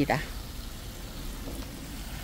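Steady hiss of water spraying from a garden hose nozzle onto potted seedlings.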